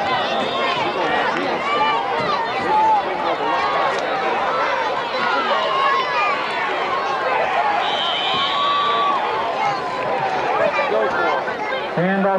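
Football crowd in the stands cheering and shouting during a play, many voices at once. A shrill referee's whistle sounds for about a second, some eight seconds in.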